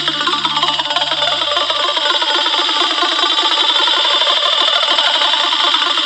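Afro house dance music from a DJ mix, with a quick, busy rhythm in the synths and percussion. The bass drops out about two seconds in, leaving only the higher parts.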